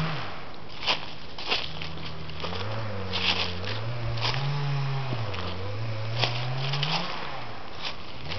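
Footsteps on snow-dusted leaf litter, about six irregular steps. A low wavering hum runs under them from about a second and a half in until near the end.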